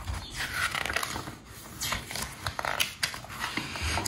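Paper rustling and handling as a page of a paperback book is turned by hand, with a few short swishes and small taps.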